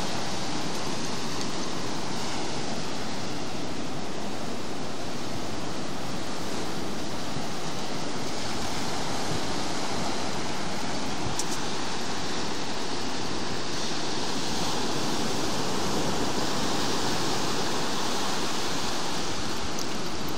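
Ocean surf breaking and washing up the beach, a steady rushing noise.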